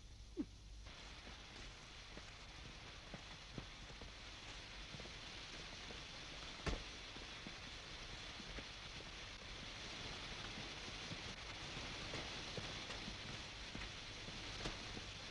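Faint steady hiss with scattered snaps and clicks from soldiers moving through jungle undergrowth, with one sharper click about halfway through.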